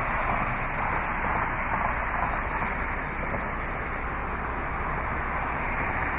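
Steady outdoor background noise: an even rush with no distinct events and a low steady hum underneath.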